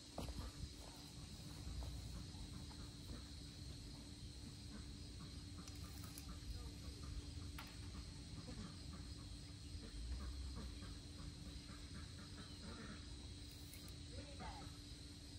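Quiet outdoor background: a faint, steady high-pitched drone over a low rumble, with no clear event standing out.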